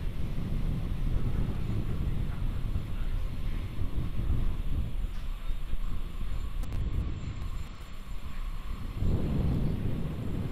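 Falcon 9 first stage's nine Merlin 1D engines firing during ascent: a steady, low, uneven rumble. About nine seconds in it turns fuller and brighter as the sound switches to the rocket's onboard camera.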